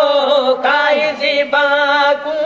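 Men's voices singing a Sindhi devotional naat in a chant-like style, holding long notes that waver and bend, with brief breaks between phrases.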